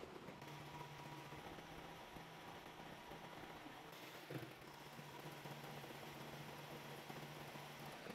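Faint steady low hum of a PACCAR MX-13 diesel engine idling, with one light tick a little past halfway.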